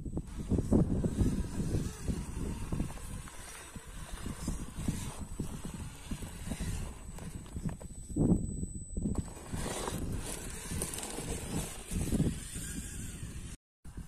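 Axial Capra radio-controlled rock crawler climbing over rock: its tyres, axles and chassis knocking and scrabbling on stone, with a thin high electric-drive whine.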